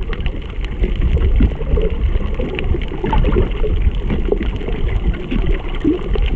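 Muffled water noise recorded underwater, a steady low rumble scattered with small irregular gurgles and blips from water moving around the camera.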